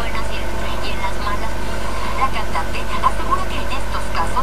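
A woman speaking Spanish into a reporter's microphone in a TV interview, over a steady low hum.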